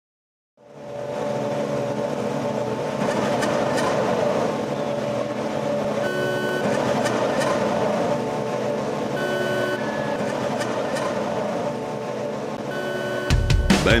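Intro soundtrack: a steady, dense droning hum that fades in at the start, with a short electronic beep about every three seconds, and a louder burst of music just before the end.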